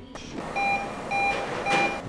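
Hospital medical equipment giving three short electronic beeps about half a second apart, over a steady hum of room noise.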